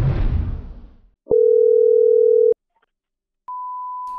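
A short whooshing logo sting that fades out about a second in. It is followed by a loud, steady low electronic beep lasting just over a second, then a gap, then a quieter, higher steady beep that starts near the end.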